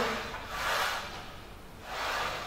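A man's breath, a soft rushing exhale that swells about half a second in and fades, as he lifts a loaded Smith machine bar in a deadlift.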